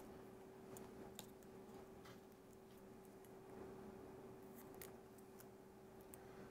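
Near silence: a few faint small clicks and creaks as metal pushpins are pressed into a foam craft egg, over a faint steady hum.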